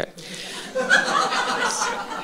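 An audience laughing and chuckling together in response to a joke, a soft spread of many voices that holds for most of the two seconds.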